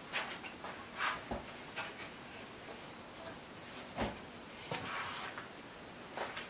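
A wall cabinet door being opened: a few scattered light clicks and knocks, the loudest about one second and about four seconds in.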